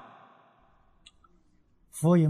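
A pause in a man's speech: his last word fades out, then near silence with a faint mouth click about a second in, and a short breath just before he speaks again.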